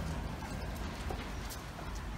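Footsteps on a concrete floor: sandals and two Great Danes' paws walking, with a few scattered taps and clicks over a low steady background hum.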